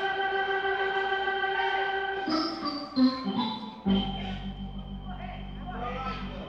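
Organ playing long held chords in the instrumental opening of a gospel hymn. The chord changes about two to three seconds in, and deep held bass notes come in just before four seconds.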